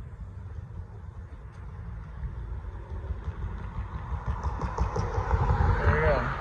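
A car driving past close by, its engine and tyre noise growing louder and peaking near the end, with a falling pitch as it goes by.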